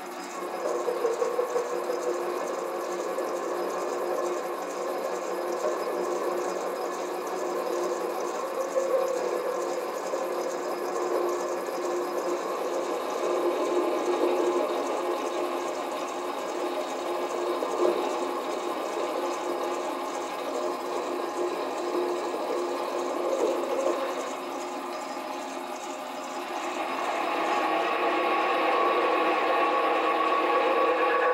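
Bench lathe running with a boring head in the spindle, its tool boring out a hole in an aluminium block on fine feed: a steady machine whine with the cutting noise of the tool. About 26 seconds in, the sound becomes louder and brighter.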